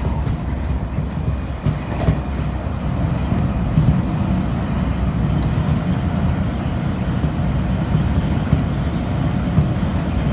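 Washington Metro (WMATA) Metrorail train running along its tracks, heard from inside the front car: a steady low rumble with a few faint clicks of the wheels over the rails.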